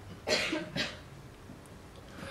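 A man coughs twice, briefly, in the first second, with the coughs carried through a lecture-hall microphone.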